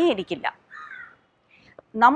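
A crow cawing once, briefly, about a second in, quieter than the voice before it.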